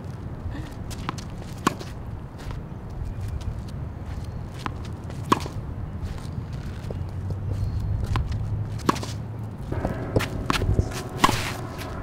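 Tennis balls struck by rackets in a forehand drill: sharp pops, the loudest about every three and a half seconds, with fainter knocks between. Footsteps shuffle on the hard court over a steady low rumble.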